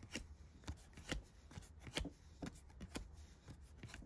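Baseball trading cards being flipped one by one through the hands: faint, irregular soft ticks of card stock, about a dozen.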